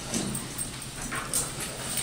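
A few irregular knocks and shuffles of a folding chair and a backpack as an actor sits down at a table on stage, over a steady low hum.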